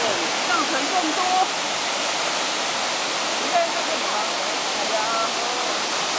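Waterfall cascading over boulders into a pool: a steady, unbroken rush of falling water. Faint voices talk briefly over it now and then.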